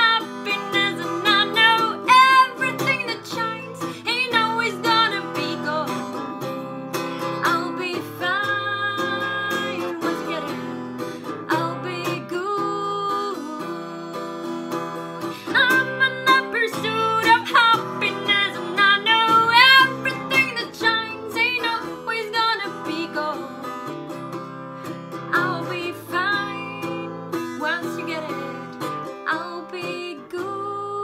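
A woman singing over a strummed acoustic guitar.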